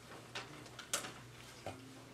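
Quiet room tone in a hall: a low steady hum with a few small scattered clicks and knocks, the loudest about a second in.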